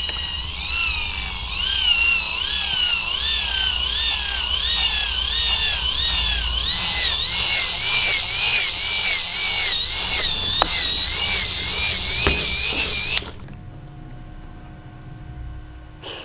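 Microwave turntable synchronous motor and its small gear train whining as it is hand-cranked fast, the pitch swelling and dipping with each turn of the crank. About 13 s in the whine cuts off suddenly as the motor jams: its ferrite magnet has shattered from the speed, and the pieces stuck to the armature poles.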